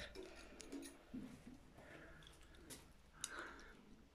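Faint clicks and light scraping as a small blade picks at loose, flaking paint on a fired-clay statue, whose paint has lost its adhesion.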